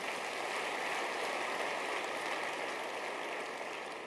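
Congregation applauding, a dense, steady clapping that slowly fades toward the end.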